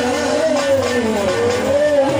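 Devotional aarti song: a voice holding one long, wavering note over instrumental accompaniment.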